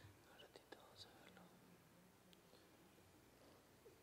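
Near silence: room tone with faint, low murmured voices and a few faint clicks in the first second.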